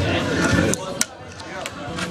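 Fingerboard clacking on the wooden tabletop: a sharp tap about a second in and a lighter one about half a second later, the pop and landing of a kickflip. Voices are heard before them.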